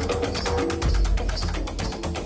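Percussion-led band music with a steady beat: many quick knocks and taps over a deep bass pulse and held pitched notes, played on homemade instruments such as struck plastic pipes, a tin can and a plastic jerry can.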